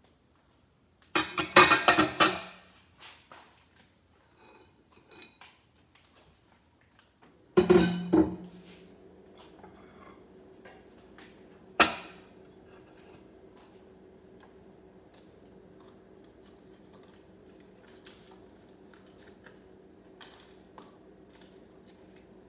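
Dishes and kitchenware clattering twice on a kitchen counter, then a faint steady hum that starts right after the second clatter and keeps going, with one sharp click about twelve seconds in.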